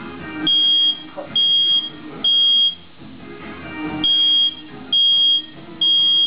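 Smoke alarm sounding in the three-beep pattern: three loud, high beeps, a pause of about a second, then three more, set off by smoke from an open fire burning in a tray. Background music plays faintly underneath.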